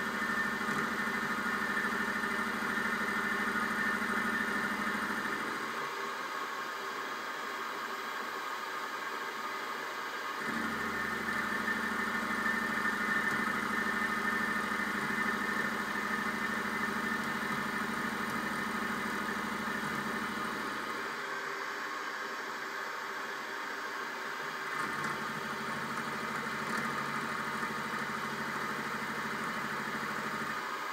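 Benchtop milling machine (Sieg SX3.5 DZP) running, its end mill side-cutting a metal block, a steady motor hum and whine with cutting noise. The low hum drops out abruptly twice, for a few seconds each, around a quarter of the way in and again about two-thirds through.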